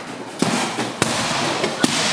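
Boxing gloves striking a heavy punching bag: three sharp punches, the first less than half a second in and the others roughly 0.6 and 0.8 s apart.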